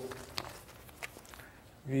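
A few faint footsteps as a man walks across the front of a lecture room, between spoken words.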